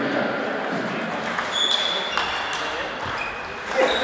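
Table tennis balls striking tables and bats in a sports hall: sharp clicks with short, high ringing pings a couple of times in the middle, and a louder knock near the end, over background chatter echoing in the hall.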